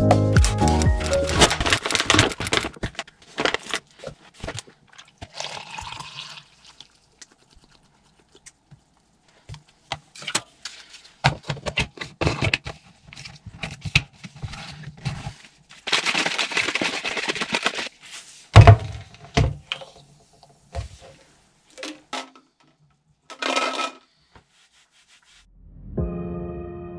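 Electronic music fading out at the start, then scattered handling sounds: a metal fork and knife clicking against a frying pan, water running, and a plastic protein shaker bottle being shaken.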